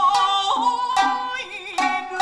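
Kiyomoto-bushi accompaniment: a singer holding long, wavering notes over shamisen plucks that land about twice a second.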